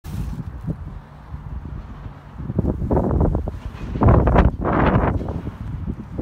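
Wind buffeting the phone's microphone: a constant low rumble with stronger gusts about halfway through and again near the end.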